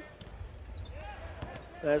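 Basketball being dribbled on a hardwood court, a few fairly quiet bounces over low arena background noise.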